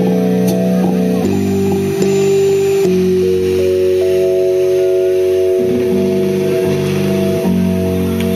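Live rock band playing an instrumental passage: electric guitar through a Marshall amp holding long sustained chords that change every second or two, with drums underneath.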